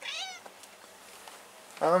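Tortoiseshell cat giving one short, high meow at the very start, lasting about half a second.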